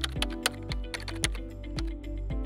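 Computer keyboard typing, a quick run of key clicks, over steady background music.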